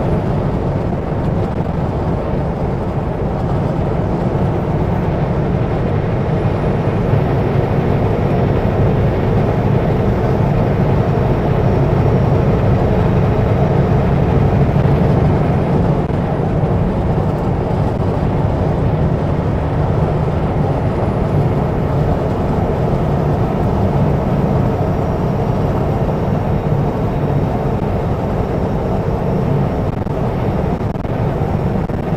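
Kenworth W900L semi truck driving at highway speed: a steady low engine drone mixed with tyre and wind noise, swelling slightly about halfway through.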